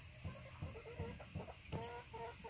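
A chicken clucking, a run of short repeated notes starting near the end, after a few faint low thuds.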